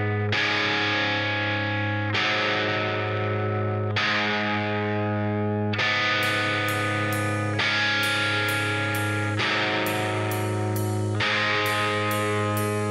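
Distorted electric guitar playing sustained chords that change about every two seconds, the instrumental intro of a rock song. Short high ticks join in about halfway through.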